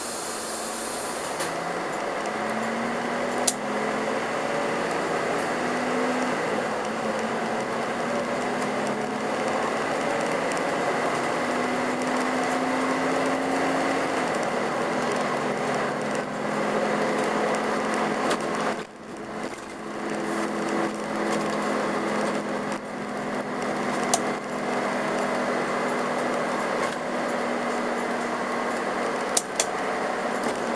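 Karosa B731 city bus's diesel engine and drivetrain heard from inside the bus while it drives, the engine note rising in steps during the first half and then holding steady. The sound drops briefly about two-thirds of the way through, and a few sharp rattling clicks come through.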